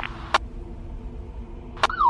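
Quiet hiss of a police radio recording between transmissions, broken by a short, sharp click about a third of a second in and another near the end.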